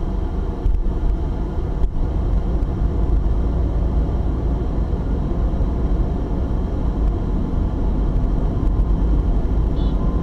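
Steady low rumble of a car on the move, engine and tyre noise heard from inside the cabin.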